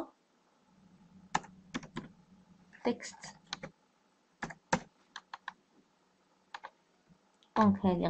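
Computer keyboard typing: irregular small runs of keystrokes with pauses between them, as a line of code is entered.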